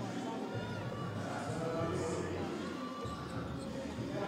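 Basketball arena ambience during live play: a crowd murmuring and calling out, with a basketball being dribbled on the court.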